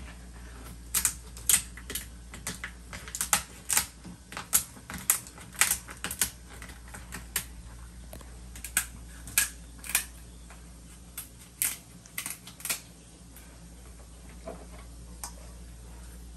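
Kitchen shears snipping and cracking through a cooked Australian lobster's shell: a run of sharp, irregular clicks, one or two a second, thinning out after about thirteen seconds.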